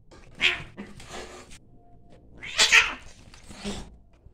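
Two cats fighting, yowling and hissing in short harsh bursts, the loudest a little past halfway.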